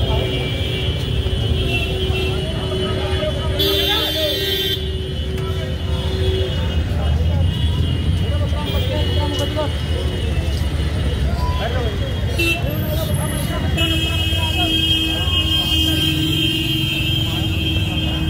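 Busy street traffic: a continuous rumble of engines and tyres under many people talking. A long steady tone sounds for several seconds at the start and again near the end.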